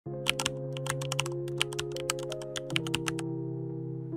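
Rapid computer-keyboard typing clicks, about twenty in three seconds, over soft background music of held chords; the typing stops about three seconds in while the chords go on.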